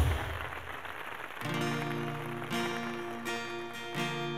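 An electronic intro jingle fades out, then about a second and a half in a steel-string acoustic guitar starts playing, strummed chords ringing with a fresh strum about once a second.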